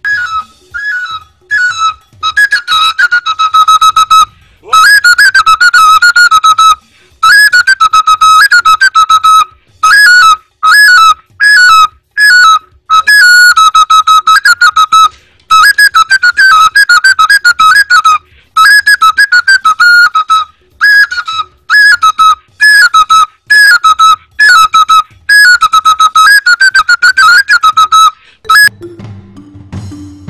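An oja, the Igbo wooden flute, played loud and shrill in short repeated phrases, each a quick up-and-down figure, with brief breaks between them. It stops near the end.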